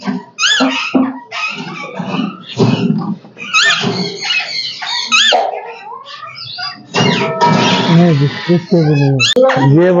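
Alexandrine parakeets calling in an aviary: repeated short, sharp rising calls, then a longer harsh call about seven seconds in.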